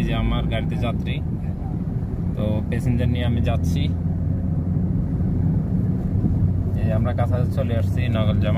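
Steady low drone of a car's engine and road noise heard from inside the cabin while driving.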